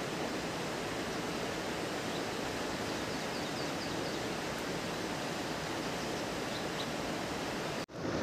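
Steady, even rush of a mountain river's flowing water, unchanging throughout.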